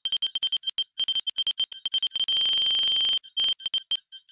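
Electronic computer-readout beep effect: rapid short high beeps, typical of on-screen text typing out. About two seconds in they give way to one steady held tone for about a second, and then the quick beeps resume.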